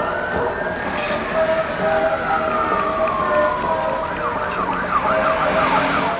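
Vehicle siren sounding a slow wail that rises and then falls over about four seconds, then switches to a fast up-and-down yelp of about four cycles a second.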